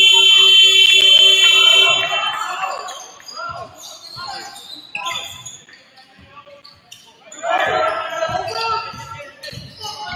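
Gym scoreboard buzzer sounding loudly for about two seconds. It is followed by basketball dribbles and voices shouting on the court, which swell again near the end.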